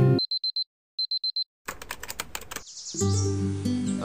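Digital alarm clock beeping: two quick sets of four high beeps, followed by a rapid run of clicks. Music starts up about three seconds in.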